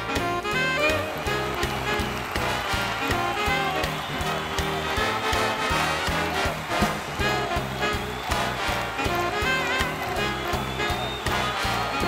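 Swing-style instrumental music with a steady beat.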